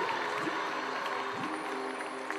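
Accompaniment music with sustained held tones, under scattered audience applause.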